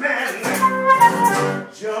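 Blues flute playing a melodic fill of held notes over guitar accompaniment. A singer's voice comes back in near the end.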